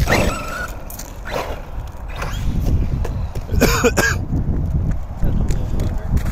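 An Arrma Granite RC monster truck's electric motor and tyres running, with a short burst at the start and a steady low rumble through the second half as it drives off across the ground.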